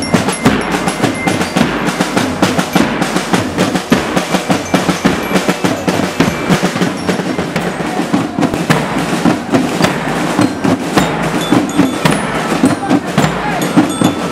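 School marching band playing: snare and bass drums beat a dense, steady rhythm under the ringing metal tones of bell lyres (marching glockenspiels).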